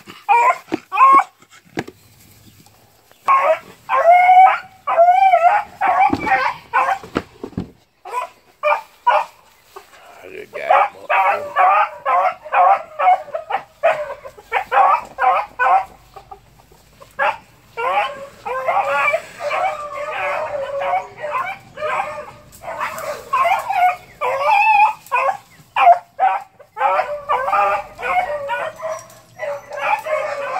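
Young hound dogs barking and yelping over and over in quick runs, with short pauses between bouts: the baying of a puppy on the chase after a rabbit.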